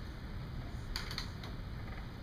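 A quick run of four or five key clicks about a second in, over a steady low room hum in a quiet classroom.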